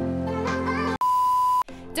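Background music, then about a second in it cuts off abruptly and a single steady high-pitched electronic beep sounds for about half a second before music and a voice come back near the end.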